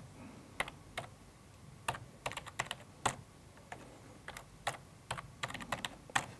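Computer keyboard being typed on in short, uneven runs of keystrokes, with single clicks and quick clusters spread across the few seconds.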